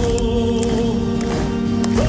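Power metal band playing live at full concert volume: a slow passage with a chord held by massed voices and keyboards over cymbal strikes, the chord shifting near the end.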